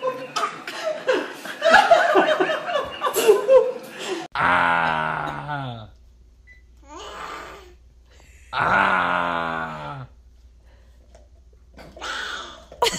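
People laughing, then two long vocal calls about three seconds apart, each sliding steadily down in pitch, with a fainter one between them.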